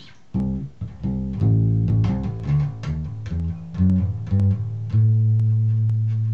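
Electric bass guitar through an amp playing a quick run of plucked notes that climbs up the A string with pull-offs. About five seconds in it lands on a note at the 12th fret of the A string and holds it out, ringing steadily.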